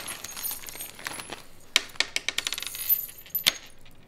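Metal surgical screws and rods from removed spinal fusion hardware clinking together as they are tipped out of a plastic zip-top bag into a hand. A run of sharp clinks, with a few louder ones in the second half, over light rustling of the bag.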